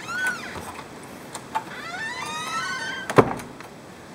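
Door hinge creaking in squeaky, rising glides as a door swings open, followed a little after three seconds by a single loud thud.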